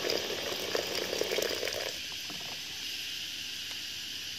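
Boiling water pouring in a stream from an electric hot-water dispenser onto mulberry leaves in a ceramic bowl, splashing until it stops about two seconds in. A steady hiss carries on after the pour.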